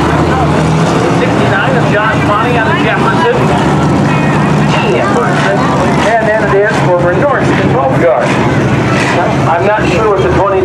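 A field of hobby stock race cars' engines running steadily at low speed as the pack rolls around together, with people's voices over them.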